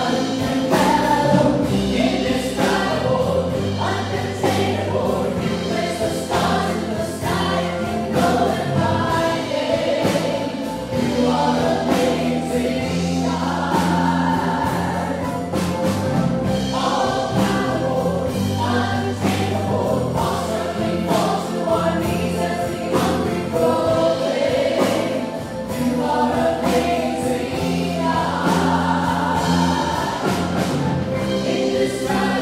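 Live praise band playing a worship song: several singers on microphones over electric bass, drum kit, guitars and keyboard.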